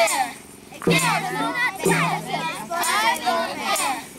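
A group of children chanting an action song together, lively and loud, with a brief pause about half a second in.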